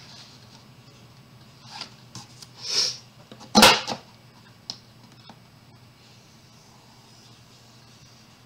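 Cardstock and the plastic scoring tool being handled on a We R Memory Keepers 1-2-3 Punch Board while scoring a box. There is a short scraping swish about three seconds in, then a single sharp plastic clack just after, the loudest sound, and a faint click about a second later.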